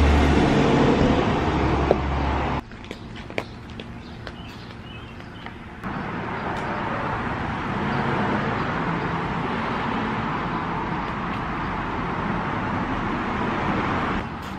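Street traffic: a large vehicle drives past with a loud, deep rumble for the first two and a half seconds, then it cuts off. After that it is quieter with a few light clicks and knocks, and from about six seconds in a steady rushing noise holds to the end.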